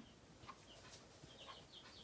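Near silence: faint room tone with a few brief, faint high chirps scattered through it.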